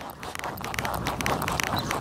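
A horse trotting on arena sand: a quick run of soft hoofbeats over a steady noise.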